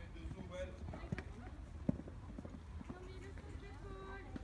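A horse's hooves cantering on a sand arena: an irregular run of dull thuds, with one sharper knock a little before two seconds in. Faint voices are heard in the background.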